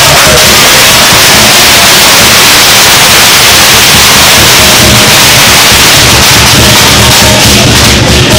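Dragon-dance percussion of drum and cymbals, played close and very loud: a steady wash of cymbal crashes over a repeated drum beat, so loud that the recording overloads and distorts.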